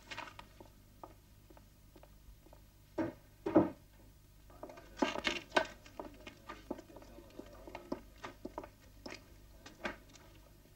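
Two dull thuds about three seconds in, then irregular clicking and tapping of manual typewriter keys in an office.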